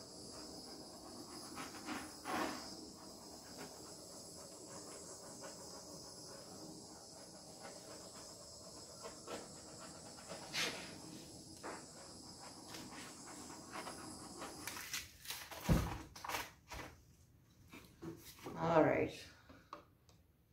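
Handheld torch hissing steadily as it is passed over wet acrylic paint to pop air bubbles, cutting off about fifteen seconds in. A few knocks follow, then a short breathy vocal sound near the end.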